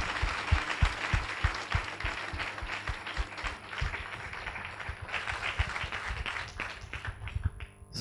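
Audience applauding: many hands clapping, thinning out and fading over the last few seconds.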